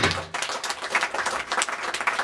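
Audience clapping after a song, the claps dense and irregular, with a low bass note dying away in the first half-second.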